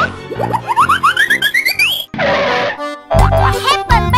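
Cartoon sound effects over children's background music. A run of quick rising pitch glides comes first, then a short hiss about two seconds in, then a bassy beat with more springy up-and-down glides from about three seconds.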